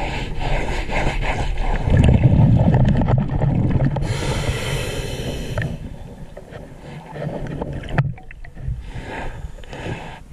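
Scuba regulator breathing recorded underwater: a loud rumble of exhaled bubbles about two seconds in, then a hiss of inhalation lasting over a second. Scattered knocks follow near the end.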